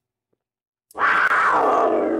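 A big-cat roar sound effect, standing in for a puma, starting suddenly about a second in and sliding down in pitch.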